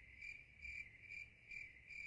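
Crickets chirping faintly in an even rhythm, about two chirps a second: the stock sound effect for an awkward, empty silence.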